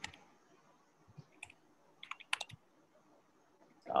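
A few faint, scattered clicks of computer keys being typed, with a quick run of them about two seconds in.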